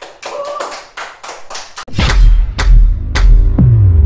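A small audience clapping for about two seconds. Then a loud outro music sting with deep bass hits and a falling sweep near the end.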